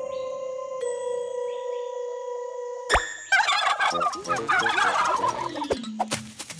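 Soft sustained chiming music notes, cut by a sharp pop about three seconds in, followed by a cartoon bird's rapid gobbling, squawking vocal for about two and a half seconds.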